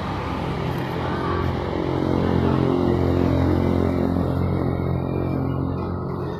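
A motor vehicle engine running nearby: a steady low hum that grows louder through the middle and eases off again, as of a vehicle idling or passing slowly.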